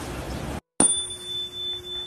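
Street traffic noise that cuts off abruptly about half a second in, followed by a bright bell-like chime that strikes once and rings on with a wavering level, the sound effect of an end card.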